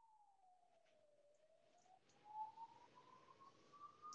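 Near silence, with one faint thin tone that slowly falls in pitch and then rises again, like a far-off wail, and faint noise in the second half.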